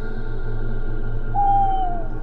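Eerie ambient background music with steady droning tones. Past the middle, a single hooting note sounds for about half a second, falling slightly in pitch.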